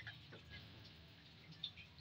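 Near silence, with one or two faint ticks of a serving spoon against the pot and plate as curry is dished out; the clearest comes about one and a half seconds in.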